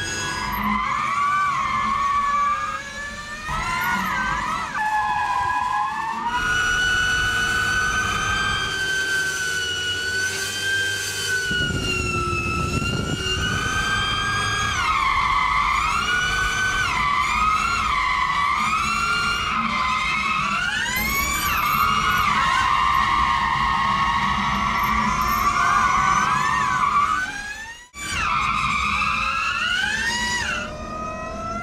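Ford Mustang Mach-E 1400 prototype drifting: its electric drive whines, the pitch sliding up and down with the throttle, over rough tyre noise. The sound breaks off sharply for a moment near the end.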